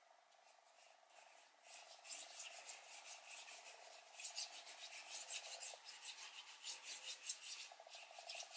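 Paintbrush loaded with acrylic paint dragged across paper in a series of short, faint, scratchy strokes, starting about two seconds in.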